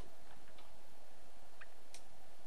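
A few faint, light ticks over a steady background hiss: small handling clicks.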